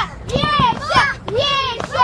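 Children's high-pitched shouts and calls in a crowd: several short cries that rise and fall, about half a second apart.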